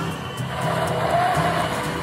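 Background music with a steady beat, over a Wuling Almaz SUV driving past, its sound swelling to a peak about a second in and then fading.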